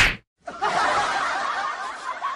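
Canned laughter sound effect: many people chuckling and laughing together, starting about half a second in.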